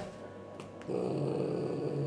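A frightened cat growling: a low, steady growl that starts about a second in.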